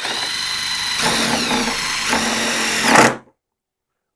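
Ryobi cordless impact driver driving a galvanized self-tapping screw through a PVC tee fitting into PEX pipe. Its whine drops in pitch about a second in as the screw threads grab and bite. It cuts off suddenly about three seconds in once the screw is seated.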